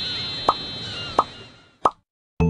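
Cartoon intro sound effects: three short plop-like pops about two-thirds of a second apart, over a high ringing chime tone that fades away.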